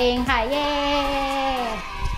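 A woman's voice drawing out one long sung note, held steady for over a second and dipping in pitch as it ends.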